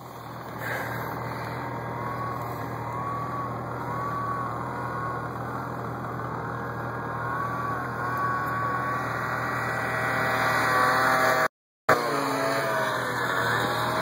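Snowmobile engine running and being throttled through deep powder, its whine rising and falling in pitch and growing louder toward the end. The sound cuts out for a moment near the end, then comes back lower and falling.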